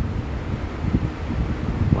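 Wind buffeting the microphone: a low, uneven rumbling noise that rises and falls.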